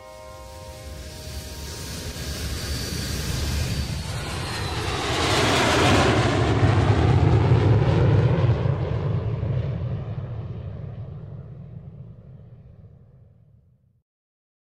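An airplane flying past: its rumble and hiss swell over several seconds, are loudest a little past the middle, then fade away just before the end.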